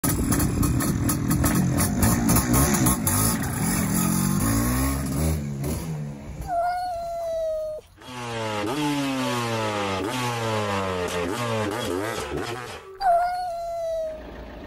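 MZ TS 250/1's single-cylinder two-stroke engine revving, rising and falling in pitch for about six seconds. Then a cat meows once, a run of repeating falling sweeps follows, and a second meow comes near the end.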